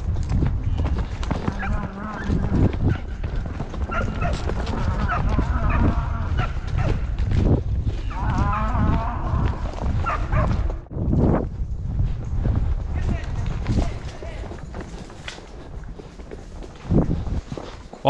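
Heavy wind rumble on the microphone of a rider chasing cattle on horseback, easing off after about thirteen seconds. Drawn-out, wavering calls rise over it between about four and ten seconds in.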